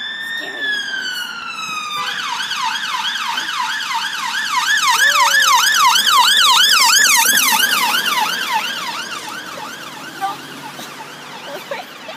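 Ambulance response car's electronic siren, passing by: a slow wail that switches about two seconds in to a fast yelp of about three sweeps a second. The yelp is loudest a few seconds later as the vehicle goes by, then fades away.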